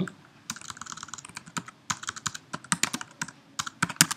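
Typing on a computer keyboard: an irregular run of quick key clicks as a terminal command is typed.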